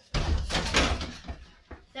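Over-the-door mini basketball hoop banging and rattling against the door as a ball is dunked through it, a loud jolt lasting about a second.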